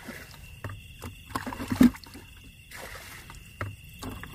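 Hands groping and splashing in shallow muddy water while feeling for fish: a few irregular wet slaps and squelches, the loudest a little under two seconds in. A steady high-pitched trill runs behind throughout.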